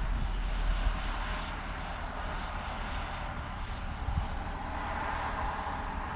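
Wind buffeting the microphone, strongest in the first second, over a steady, distant engine drone.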